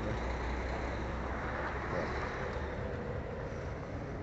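Steady outdoor background noise with a low rumble, typical of vehicles around a truck yard; the rumble eases off about two seconds in.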